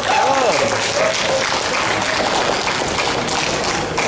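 A woman's voice through a handheld microphone and PA for about the first second, then scattered clapping from a small audience.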